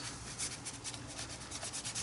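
Fingers rubbing paint across a paper journal page: faint, quick scratchy rubbing strokes.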